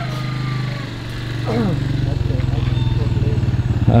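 Small motorcycle engine running at low revs under load, its steady pulsing drone getting louder after about a second, with a brief voice about a second and a half in.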